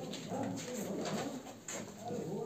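Faint cooing of a bird, over the light scratch of a marker writing on a whiteboard.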